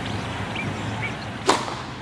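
Commercial sound effects: a steady hiss of background noise with faint short chirps, then one sharp whack about one and a half seconds in.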